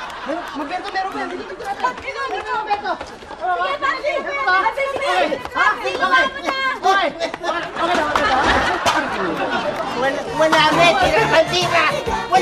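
Several voices talking and shouting over one another in a hubbub of chatter.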